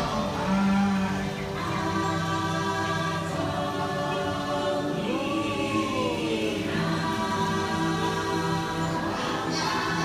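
Choral singing over sustained music from the boat ride's soundtrack, with low held notes underneath. About five seconds in, a single voice rises and then falls in pitch.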